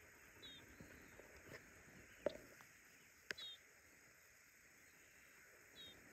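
Near silence: quiet open-pasture ambience, with a few faint, brief high chirps spread through it and two faint clicks.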